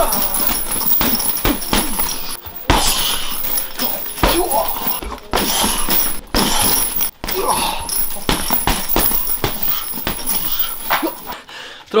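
Gloved punches landing on a hanging heavy bag in quick, irregular combinations, with short grunts and sharp breaths from the boxer between them.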